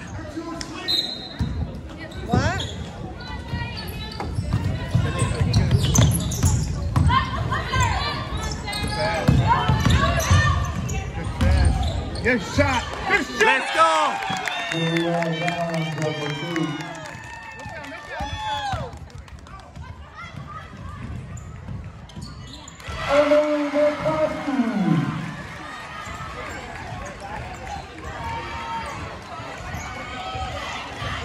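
A basketball bouncing on a gym's hardwood floor during play, with spectators shouting and clapping in a large echoing hall. There is a long held shout near the middle and another, falling shout about two-thirds of the way in.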